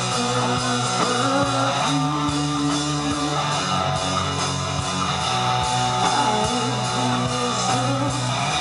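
Live rock band playing through a PA system: electric guitars to the fore over sustained bass notes and drums.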